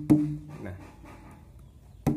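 An empty plastic water bottle slapped with the hand like a hadroh frame drum: a sharp slap just after the start, followed by a low, hollow ringing tone that fades over about half a second. A second slap lands right at the end.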